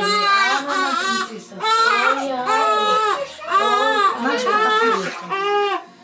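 Newborn baby crying during its bath: a run of about five drawn-out, high-pitched wails with short catches of breath between them.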